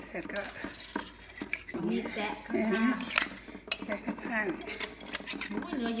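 A thin metal knife clicking and scraping against the shell of an opened butter clam as the meat is cut and cleaned out, with sharp clicks scattered throughout.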